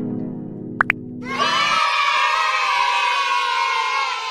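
Intro sound effects: a low synth tone held until about two seconds in, two quick pops just before the first second, then a group of children cheering that swells and slowly fades.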